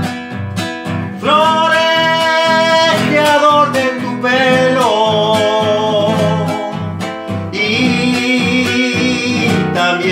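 Classical nylon-string guitar played under a man's voice singing three long, drawn-out notes.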